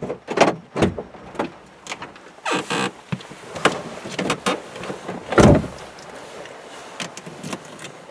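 Knocks, clicks and rustling of a person moving about in a car's driver's seat, with a short rustle about two and a half seconds in and one heavy thump about five and a half seconds in, the loudest sound.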